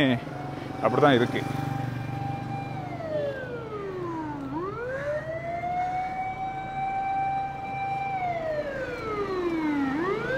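Ambulance siren wailing on a slow cycle: a long held note that glides down over a couple of seconds, then sweeps quickly back up, twice.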